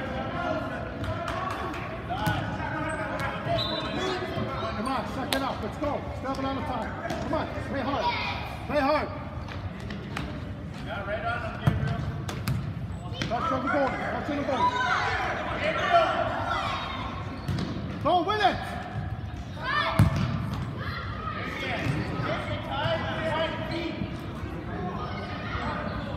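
Indoor futsal played on a hard gym floor: shouting voices echo through the hall, mixed with sharp thuds of the ball being kicked and bouncing off the floor. The voices rise louder several times in the second half.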